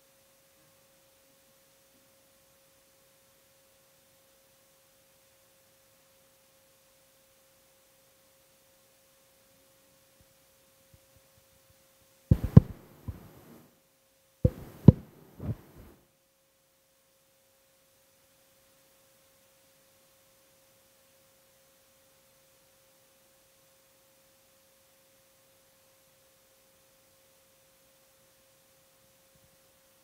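A faint, steady mid-pitched electrical tone, with two short clusters of sharp knocks a couple of seconds apart about halfway through. The tone briefly drops out around the knocks.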